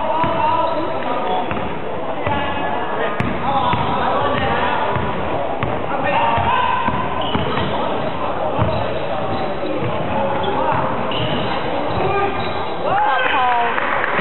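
Basketball game play: a basketball bouncing on a wooden court, with players and onlookers calling out throughout and a louder shout near the end, all echoing in a large sports hall.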